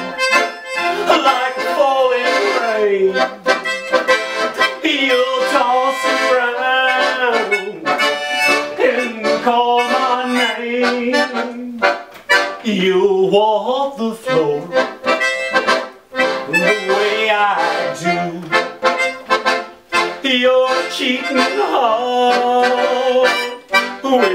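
Piano accordion and melodica playing a country tune together in an instrumental passage.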